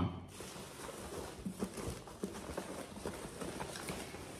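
Hands rummaging in a cardboard box of packed toys: irregular light knocks, crinkles and rustles of the box and its packing.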